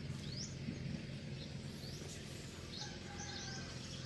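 Faint outdoor background: small birds giving short, high, rising chirps several times, with a few brief whistled notes in the second half, over a low steady hum.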